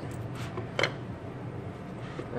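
A leather-covered travel cigar humidor case being opened by hand: two short clicks from its catch and lid.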